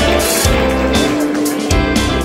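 Violin music played with the bow, with held notes, over a backing track that has a deep bass and a regular beat about every two-thirds of a second.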